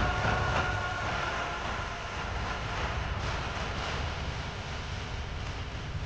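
Dramatic background-score sound effect on a TV soundtrack. It swells in suddenly with a few high ringing tones that fade over the first couple of seconds, over a steady low rumble that carries on throughout.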